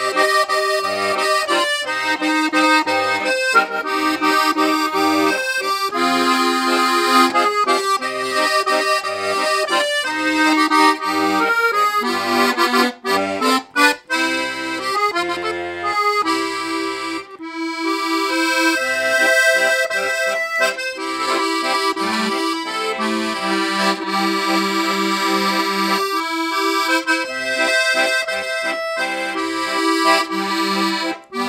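Vintage Italo-American piano accordion with LMM reeds being played: a melody on the treble keys over a steady, alternating bass-note-and-chord accompaniment from the 120 bass buttons, with a couple of brief breaks around the middle.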